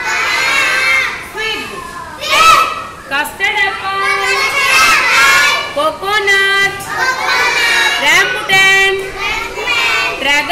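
A group of children calling out words together in loud, high-pitched chorus, one short chanted phrase after another, reciting fruit names in class.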